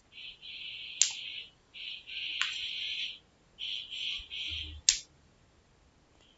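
Three sharp computer mouse clicks, about a second, two and a half seconds and five seconds in, the last the loudest. Between them comes an on-and-off high-pitched hiss.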